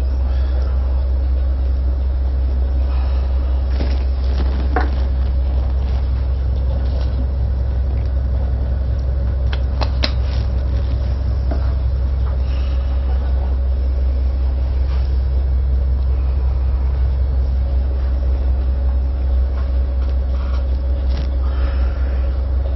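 Tugboat's diesel engines running steadily, heard inside the wheelhouse as an even low rumble with a faint steady hum above it and a few light clicks.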